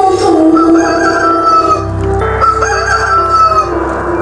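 Rooster crowing twice, a long call about a second in and another near three seconds, over background music.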